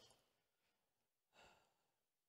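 Near silence, with one short, faint breath into a handheld microphone about one and a half seconds in.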